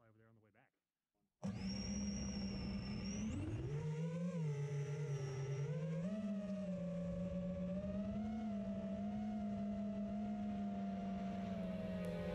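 FPV quadcopter's electric motors whining as heard from its onboard camera, starting suddenly about a second and a half in, the pitch rising and falling together as the throttle changes.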